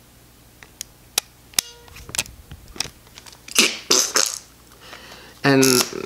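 Shutter release of a Lomomatic 110 camera being pressed: a string of small, irregular clicks and a brief creak, with no single clear shutter sound to show when the picture is actually taken. A louder short hissing noise comes twice in quick succession a little past halfway.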